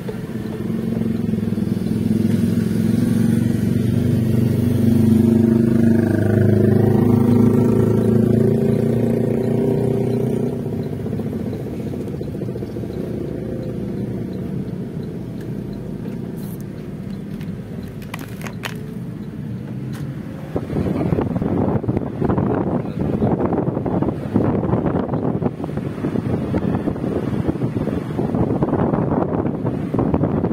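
Motor vehicle engine running in town traffic, louder and rising and falling in pitch over the first ten seconds, then easing off. From about twenty seconds in, gusty wind buffets the microphone.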